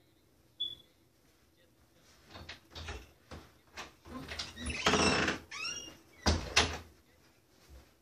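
A door being opened: a run of clicks and rattles, a short squeak about five and a half seconds in, then two heavy thumps.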